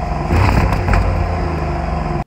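Porsche Cayenne Turbo E-Hybrid's twin-turbo 4.0-litre V8 exhaust running loudly, swelling in level about half a second in and then easing back.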